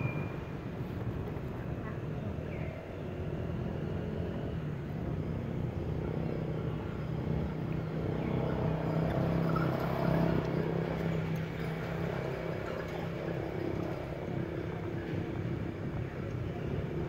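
Outdoor background with a steady low hum of motor-vehicle engines nearby, swelling for a few seconds around the middle.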